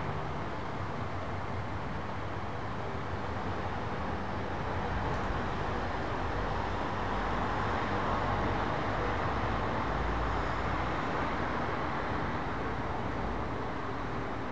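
Steady distant city noise at night, like far-off traffic, swelling a little in the middle; no music can be made out.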